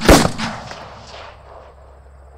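A single loud bang just after the start, its echo fading away over about a second and a half into a faint low hum.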